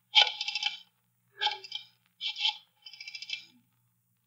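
Rotary telephone being dialed as a radio-drama sound effect: several digits, each a short burst of rapid metallic clicking as the dial runs back, with brief pauses between them, over the faint hum of an old recording.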